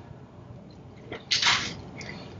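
Close-miked mouth sounds of someone eating a prawn: quiet chewing with a small click about a second in, then a short breathy hiss.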